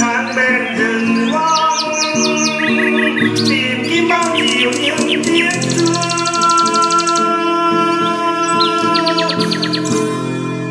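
A songbird singing runs of quick chirps and trills, with a long, very fast buzzing run in the middle, over soft instrumental music of sustained notes.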